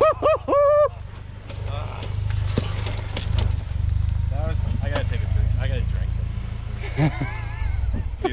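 2019 Ford Ranger's 2.3-litre EcoBoost four-cylinder running at low speed as the pickup crawls down a rocky trail: a steady low drone that stops shortly before the end.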